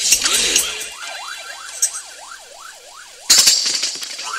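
A dub reggae dubplate playing. The bass and drums drop out and a dub siren effect wails rapidly up and down for a couple of seconds, then the full rhythm comes back in loudly near the end.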